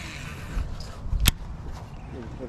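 Low rumble of wind on the microphone, with one sharp click a little over a second in, the loudest sound.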